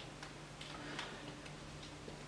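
A few faint, light clicks at uneven spacing, the clearest about a second in, over a low steady room hum.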